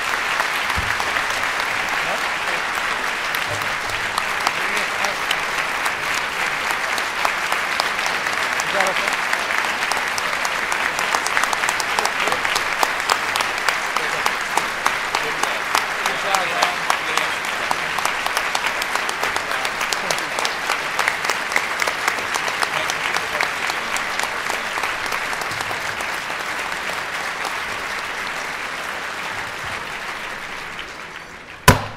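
Audience applauding steadily, a dense clatter of many hands clapping that eases off over the last few seconds.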